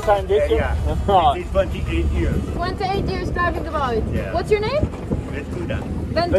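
Small boat's outboard motor running steadily at low speed, a constant low hum, with voices and laughter over it and some wind on the microphone.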